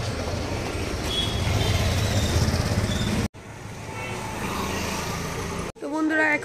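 A small motor vehicle passing close on a narrow street, a low engine rumble that builds over about three seconds and breaks off abruptly; quieter street noise follows.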